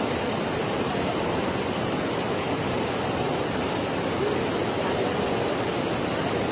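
Loud, steady rush of a fast whitewater mountain river tumbling over boulders.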